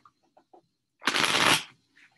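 Tarot cards being shuffled: a few light ticks, then a short, loud rush of card shuffling lasting about half a second, a second in.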